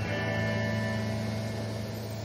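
Background score music: a soft chord sounds at the start and is left to ring, slowly fading.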